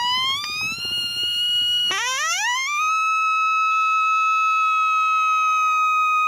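Reese Outdoors Buffalo Horn Howler, a mouth-blown coyote howler call, giving a lone coyote howl. A rising note breaks off about two seconds in, then a second note swoops up and is held long and steady.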